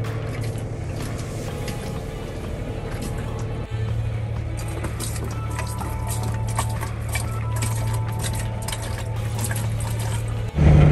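Water splashing into a sink from a hand-worked manual sink pump, with clicks and splashes coming in about four seconds in, over steady background music.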